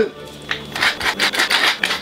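Wooden pepper mill grinding peppercorns in quick repeated twists, starting about half a second in.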